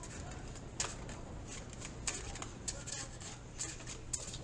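Tarot deck being shuffled by hand: a faint, uneven run of soft card flicks and ticks.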